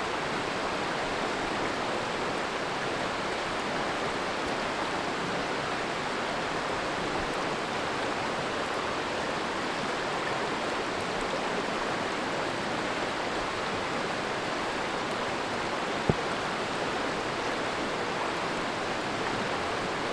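Shallow creek water running over a gravel riffle: a steady, even rushing. A single sharp click sounds about three-quarters of the way through.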